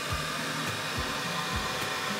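Steady whine and hiss of the Makera Carvera Air desktop CNC's spindle running while milling ABS plastic, with a soft, regular low beat of background music underneath.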